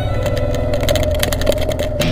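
Motorcycle engine running, with a steady tone and many sharp clicks.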